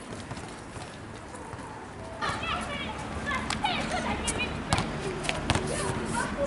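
Indistinct chatter of several voices that starts about two seconds in, with a few sharp knocks scattered through it.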